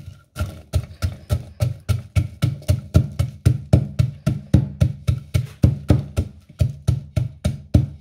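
Wooden pestle pounding red chilies and garlic cloves in a wooden mortar, crushing them into a paste, with a steady run of dull wooden knocks about three to four strikes a second.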